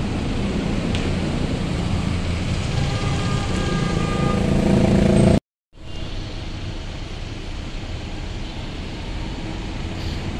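Street traffic noise: a truck passing close, with engine noise building louder over the first five seconds. It breaks off suddenly and gives way to a steadier, slightly quieter rumble of traffic.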